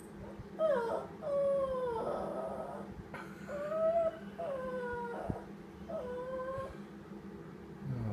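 Small dog whining in long, drawn-out howls, about five in a row with short pauses between, some sliding down in pitch at the end: a mournful whine for its lost ball, which its owner calls a sad song.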